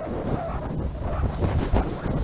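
Wind buffeting a handheld phone's microphone on the open deck of a racing trimaran under way: a steady low rumble with a thin hiss above it.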